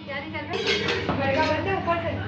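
Stainless steel pot and lid struck by a baby's open hand, giving metallic clanks and clinks.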